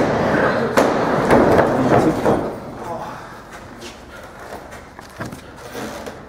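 Indistinct voices with rustling and movement noise, loudest for the first two seconds and then dropping away, with a few light knocks in the quieter part.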